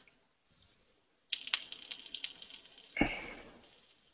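Typing on a computer keyboard: a quick run of keystrokes, then one heavier, louder key strike about three seconds in.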